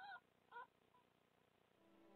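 Two short high squeaks from red fox cubs in the den, about half a second apart: location calls by which the cubs and vixen find one another.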